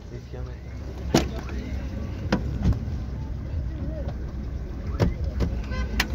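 A car door being worked by hand: a handful of sharp clicks and knocks from the handle and latch, spread through the few seconds, over a low steady rumble.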